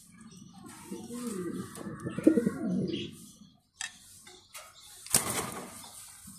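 A domestic pigeon cooing, a run of low, rolling coos over the first half. A sharp clatter follows about five seconds in.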